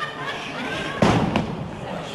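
A wrestler's body slammed down onto the ring canvas: one heavy thud about halfway through, followed shortly by a smaller, sharper knock.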